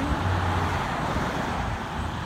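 A car driving past on the adjacent street: a steady hiss of tyre and engine noise that eases slightly near the end.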